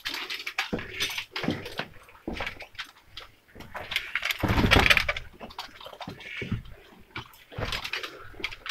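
Footsteps and scrambling over loose rock rubble and old timbers, with irregular scrapes and knocks of stone. A louder rush of movement noise comes about halfway through.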